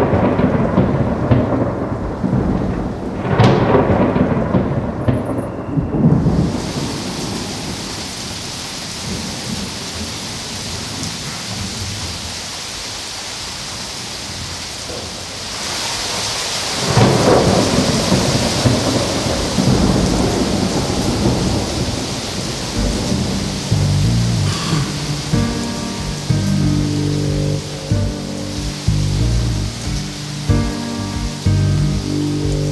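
Thunderstorm: rolling thunder with loud rumbles near the start, about three seconds in and about halfway through, over steady heavy rain. A synthesizer line of short repeated notes comes in over the rain in the last several seconds.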